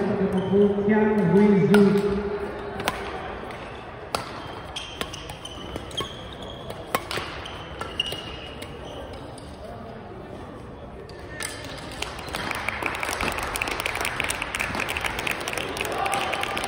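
Badminton rally: sharp racket strikes on the shuttlecock about a second apart, with short squeaks of shoes on the gym floor, after a voice in the first couple of seconds. About twelve seconds in, the rally over, clapping and crowd noise take over.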